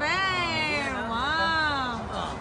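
Two drawn-out, wavering voice calls, each about a second long, the first falling and the second rising then falling, with no clear words.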